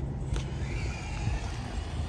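Small RC cars driving across cracked asphalt: a faint electric motor whine that rises and falls as the throttle changes, over a steady low rumble.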